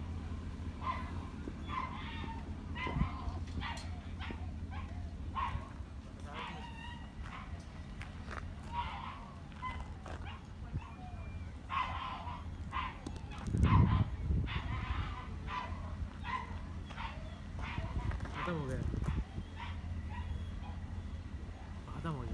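A dog barking and yipping repeatedly, short calls every second or so, over a steady low rumble, with a louder low burst about fourteen seconds in.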